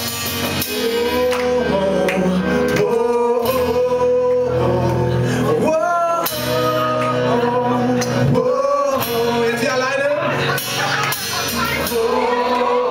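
A small live band playing a song: a male voice sings long held notes over guitar accompaniment, heard from among the audience in a small room.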